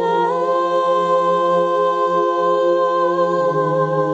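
Sung music: a high solo voice holds one long note over sustained accompanying chords, which shift to a lower chord a little past three seconds.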